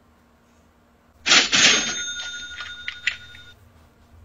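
Cash-register 'ka-ching' sound effect: a sudden bright burst about a second in, followed by bell tones ringing and fading over about two seconds, with a couple of clicks near the end.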